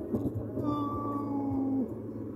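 A single long howl, held steady for about a second and dropping off near the end, over a low steady drone.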